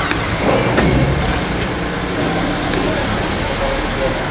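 A steady low rumble like a motor vehicle's engine running nearby, with faint voices and a few light clicks over it.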